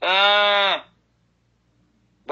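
A man's voice drawing out a single held vowel for under a second, its pitch steady and then dipping slightly as it ends.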